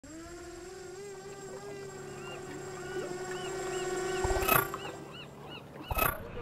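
Opening sound effect: one long held tone with short repeated chirps over it, cut by a sharp loud hit about four and a half seconds in and another hit at the very end.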